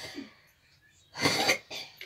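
A man coughs about a second in, a strong cough followed by a shorter, weaker one.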